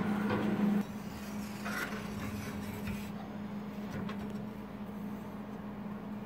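A steady low hum in the workshop, with a few faint knocks. The first second is a little louder.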